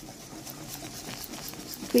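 Wire whisk stirring hot milk and egg in a steel pan, its wires clicking and scraping against the metal several times a second.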